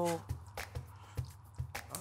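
Faint scattered soft clicks and squishes of a wooden spoon working honey into granulated sugar in a non-stick pan, over a low steady hum.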